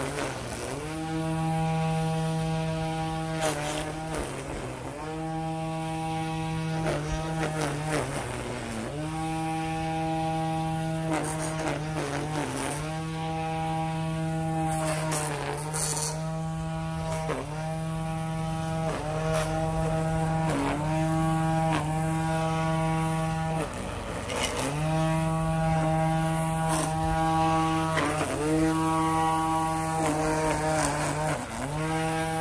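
Battery-powered string trimmer motor whining steadily, its pitch sagging and climbing back again and again as the trigger is released and squeezed. Each release lets the auto-feed head pay out more line. Short sharp ticks from the spinning line striking the edging.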